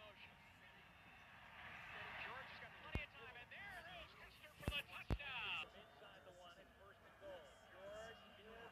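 Faint, low-quality TV game audio of an American football play: indistinct voices over crowd noise, with three sharp clicks, one about three seconds in and two close together about five seconds in.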